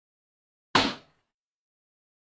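A single sudden hit: sharp onset about three-quarters of a second in, fading away in under half a second.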